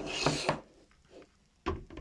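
Clear plastic incubator dome rubbing and scraping against the base as it is lowered on, then a sharp click near the end as the lid and control unit snap into place.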